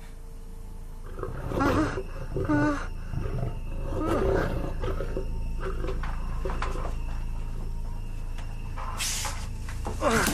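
Growls and roars of a monster in a horror film's sound effects: several short pitched cries about a second and a half, two and a half and four seconds in, and again near the end, over a steady low rumble.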